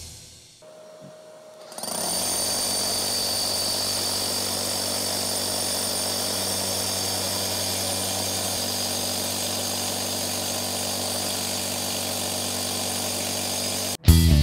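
Makita 40V XGT SDS-Max rotary hammer drilling a one-inch hole into concrete, played fast-forward, so the hammering blends into one steady drone. It starts about two seconds in after a brief lull and stops abruptly at the end.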